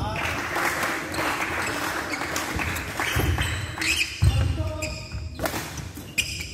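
Badminton rally on a wooden indoor court: a few sharp racket hits on the shuttlecock, with rubber-soled shoes squeaking on the floor near the end.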